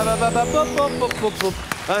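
Game-show time-up music sting as the round clock runs out: a short electronic jingle of held tones with a high falling sweep, fading out about a second and a half in.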